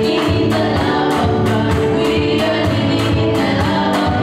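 Gospel song sung by a trio of girls through handheld microphones, over an accompaniment with a steady beat, ticking about three times a second, and sustained bass notes.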